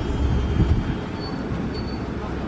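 Safari truck running with a steady low rumble, heard from inside its open-sided cab, with a faint thin high whine about halfway through.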